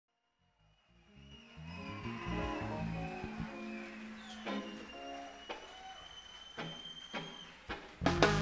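Live blues band music fading in from silence: low instrument notes moving in steps, with a few drum hits in the second half and a faint steady high tone through the middle.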